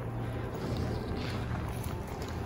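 Steady low rumble of wind on the microphone.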